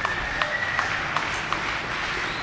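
A few scattered handclaps, about two a second, over a low crowd hubbub.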